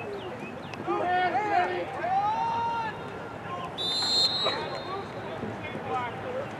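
Voices shouting across a lacrosse field, with a short, high referee's whistle blast about four seconds in.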